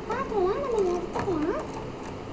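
High voice-like calls sliding up and down in pitch, about four swoops in a little over a second.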